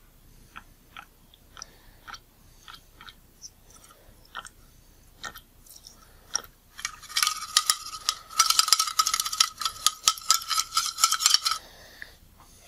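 Lighter fluid squirted from its can into a small stainless steel cup: a few scattered drips and taps, then from about seven seconds in a stream pattering into the cup with a steady ringing note for several seconds, stopping shortly before the end.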